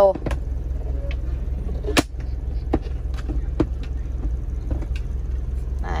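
Ford Everest's 2.5-litre diesel engine idling steadily, heard inside the cabin, with a few sharp clicks of the plastic centre console lid being opened; the loudest click comes about two seconds in.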